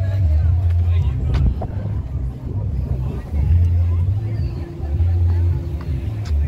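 Outdoor street ambience: a heavy low rumble that swells and fades unevenly, under faint voices.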